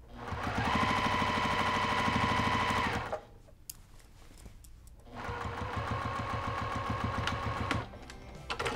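Domestic sewing machine stitching down the binding of a quilted stocking: two runs of about three seconds each, with a pause of about two seconds between, each a fast, even needle rhythm over a steady motor hum.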